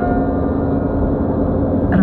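In-cabin sound of a 2001 Audi A4 B6 with its 2.0 petrol four-cylinder engine driving at highway speed: steady engine and tyre noise with a low rumble. A held ringing tone fades out within the first second.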